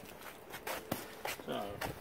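A few footsteps of boots on a concrete floor, short scuffing steps.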